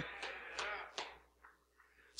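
Faint audience laughter dying away in a large room, a few scattered short sounds, then near silence about a second in.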